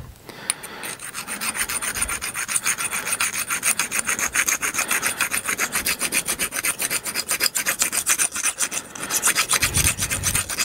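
A small hand file rasping on an aluminium printer-frame part in rapid, even back-and-forth strokes. It is taking off a burr that kept the part's holes from lining up.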